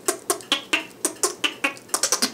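Beatboxed K.I.M. squeaks: a quick run of short, high squeaky notes made with a kissy-face lip shape and the tongue where the lips meet the front teeth, about five a second, with the tone being varied.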